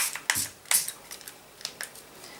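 Hand pump spray bottle spraying a glitter mix of nail polish and alcohol: a quick, uneven run of short hissing puffs, about eight in two seconds, some stronger than others.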